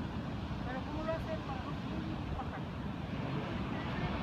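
Steady low rumble of wind buffeting the microphone on an open clifftop, with faint distant voices in the first half.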